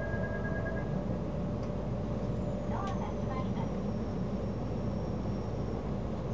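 Steady low hum of a train standing at a station platform, heard from inside the carriage, with faint distant voices about three seconds in.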